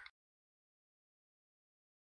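Silence: the sound track is dead quiet, with only the tail of a spoken word at the very start.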